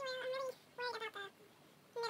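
Two high-pitched vocal calls: a drawn-out one at the start and a shorter, broken one about a second in.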